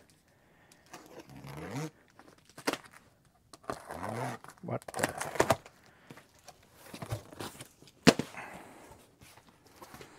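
Large cardboard shipping boxes being handled and opened: cardboard scraping and rustling with a few sharp knocks, the loudest about eight seconds in. A man's brief muttering comes twice in the first half.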